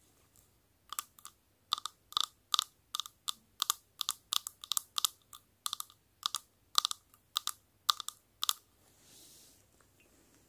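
Long fingernails tapping on the face of a light-up pocket watch: a quick run of sharp, slightly ringing clicks, about three a second. The taps start about a second in and stop a little before the end.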